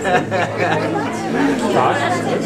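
Chatter: several people talking over one another, none of it clear enough for words.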